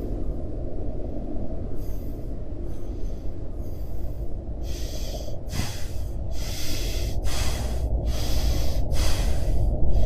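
A person breathing hard: fast, heavy breaths about one a second that start about halfway through and grow louder, over a steady low rumble.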